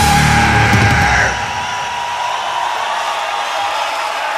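Live heavy metal band ending a song: the final chord rings out with a high held tone. About a second and a half in, the low end drops away and the sound carries on quieter as a sustained wash.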